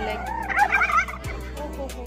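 Male domestic turkey gobbling once, a rapid warbling call of about half a second that starts about half a second in.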